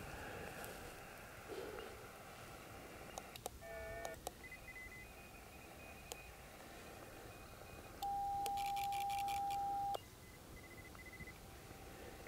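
Xiegu X6100 transceiver's built-in automatic antenna tuner matching on the 15 m band: a steady tuning tone for about two seconds with a quick clatter of tuner relay clicks during it. A short run of radio beeps comes earlier.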